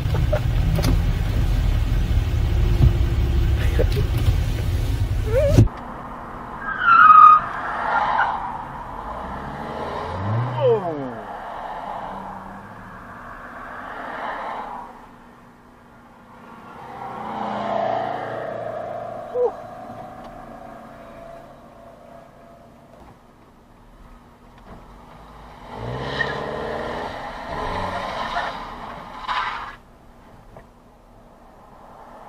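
Car and traffic sounds: a loud low rumble heard from inside a car for the first few seconds, then quieter road noise with passing cars and an engine revving up in rising pitch about ten seconds in.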